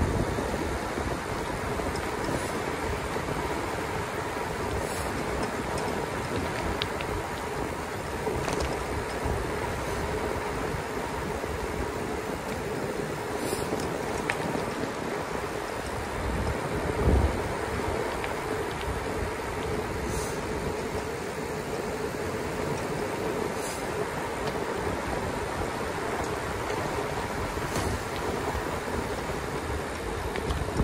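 Steady rush of wind on the microphone and tyre noise on asphalt as an e-bike coasts fast downhill, with one brief low thump a little over halfway through.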